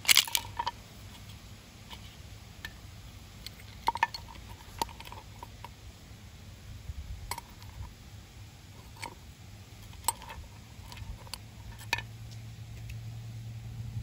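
Scattered metallic clicks and clinks as the steel garter spring is worked off the shoes of a centrifugal clutch by hand, the sharpest click right at the start. A low steady hum runs underneath.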